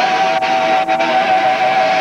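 Live heavy metal band with two electric guitars, bass and drums playing loudly, with a single high note held steady over the band. The recording is a camcorder's distant capture of the band.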